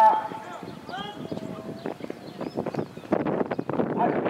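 Trotting harness horses' hoofbeats and sulky wheels clattering on a dirt track. The clatter grows into a dense, rapid patter about three seconds in, with snatches of a race commentator's voice early on.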